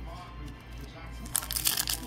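Foil wrapper of a Bowman Chrome trading-card pack crinkling as it is handled and opened, a rapid crackle starting about one and a half seconds in after a quieter start.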